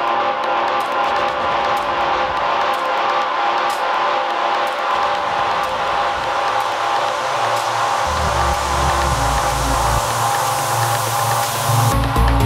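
Trance music building up: held synth chords under a hiss that swells steadily louder. Deep bass notes come in about eight seconds in.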